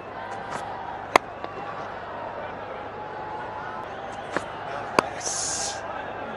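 Sharp crack of a cricket bat hitting the ball about a second in, over a steady stadium crowd murmur. Two smaller knocks come near the end, followed by a brief high hiss.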